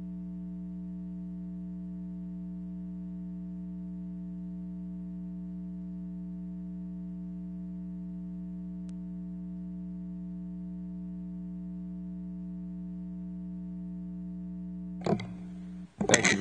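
Steady electrical hum-buzz from the sound system, one unchanging low tone with higher overtones, holding at an even level throughout. A brief knock sounds near the end.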